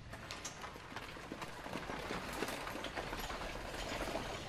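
Horse-drawn carriage setting off: horses' hooves clip-clopping in an irregular stream of sharp knocks.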